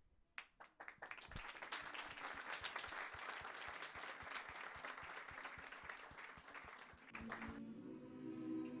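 A roomful of people applauding: a few scattered claps at first, quickly building into steady applause that stops near the end, as music with sustained notes begins.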